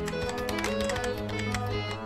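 Background music with light computer-keyboard typing clicks over it, a sound effect accompanying on-screen text being typed.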